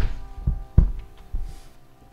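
A few dull low thumps, about four within two seconds and fading, over a faint steady tone.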